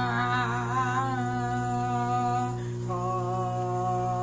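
A running microwave oven's steady low hum, with a woman humming long held notes along with it. Her first note wavers, then steadies, and about three seconds in she moves to a new held note.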